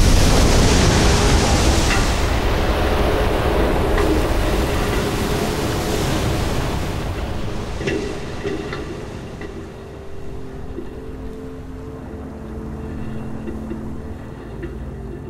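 Loud rush of water and spray from a spent rocket booster that has just splashed down into the ocean, slowly fading as the turbulence dies away, with wind buffeting the microphone.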